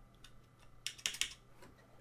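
A few faint computer keyboard key presses clustered about a second in, pressing Enter to add new lines in a text editor.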